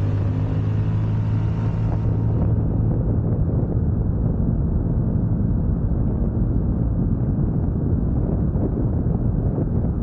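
Scomadi TT125i scooter's 125 cc single-cylinder four-stroke engine running as the scooter rides along, with a steady engine hum for the first two seconds. After that, wind rushing over the camera microphone covers most of it.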